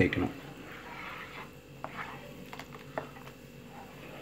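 Spatula stirring a curd-and-buttermilk gravy in a non-stick pan: soft stirring with a few light clicks of the spatula against the pan, over a steady low hum.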